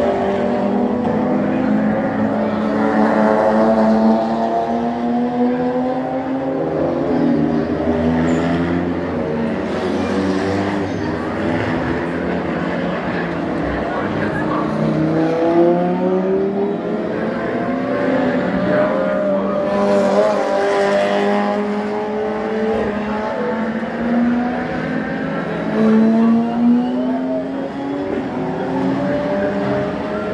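Race car engines running hard on the circuit, their notes repeatedly rising and falling as the cars accelerate and change gear while they pass.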